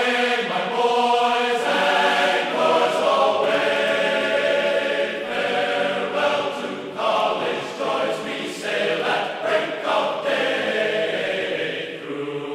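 Choir singing slow music in long held notes, with short breaks between phrases.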